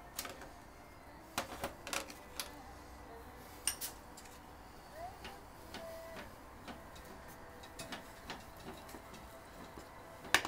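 Scattered knocks and clicks of wooden boards being handled against the jaws of a woodworking vise, a cluster of sharper knocks in the first four seconds and lighter taps after.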